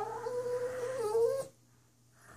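Small shaggy dog whining: one drawn-out, fairly steady high whine lasting about a second and a half.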